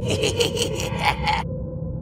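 Outro sound effect: a rapid, scratchy rasping for about a second and a half that cuts off suddenly, over a low drone that fades away.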